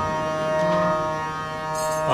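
Harmonium holding a steady chord of several sustained reed notes between sung lines, dipping slightly in loudness past the middle before swelling again.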